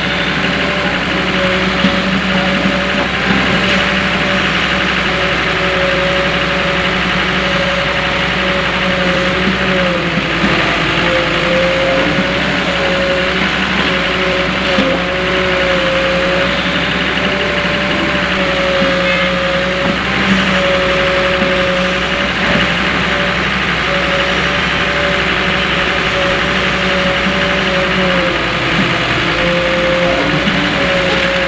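Volvo EW130 wheeled excavator's diesel engine running steadily as it loads a truck, with a whine that wavers slightly in pitch over the steady engine sound.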